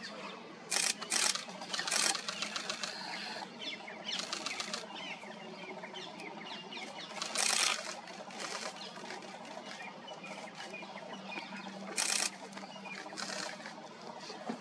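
Small birds chirping and calling over one another in a busy dawn-type chorus, with a few loud, brief noisy bursts cutting through, the loudest about a second in and again near the end, over a low steady hum.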